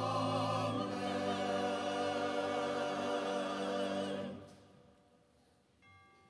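Church choir singing with pipe organ accompaniment, a held final chord that stops about four seconds in and dies away in the reverberant sanctuary.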